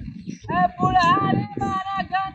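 A high-pitched, child-like singing voice holding steady notes, with low talking underneath.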